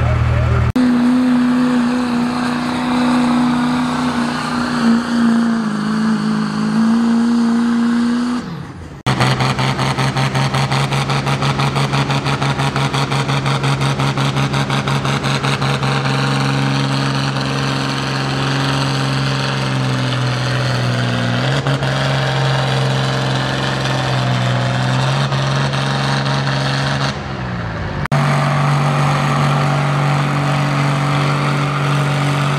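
Pulling tractor engines running at high, steady revs under heavy load as they drag a weight-transfer sled, the pitch stepping down partway through a run. The sound breaks off abruptly and picks up again three times.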